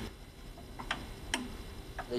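Low, steady room hum with a few faint, isolated clicks, the sharpest about a second and a half in.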